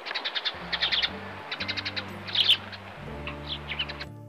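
Songbirds chirping in rapid bursts of short high notes, over background music with low sustained notes.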